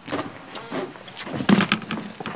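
Handling noise of a camera being set up: rustling and knocks as someone moves close to the microphone, with one sharp thump about one and a half seconds in.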